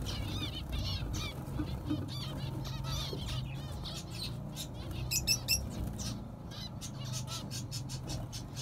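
A small flock of white zebra finches (snow white and penguin mutations) calling, with many short, quick chirps overlapping, and wings fluttering as birds fly between the clay pot nests. A steady low hum runs underneath.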